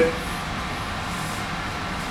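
Steady background noise with a faint low hum, no distinct sound events.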